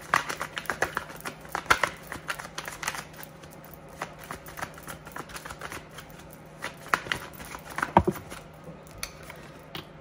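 A deck of tarot cards being shuffled by hand: a run of quick riffling clicks and card snaps, thickest in the first few seconds and again around seven to eight seconds, with the sharpest snap about eight seconds in.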